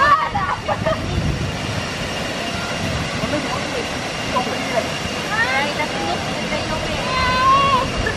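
Steady rushing of a waterfall pouring into a rock pool.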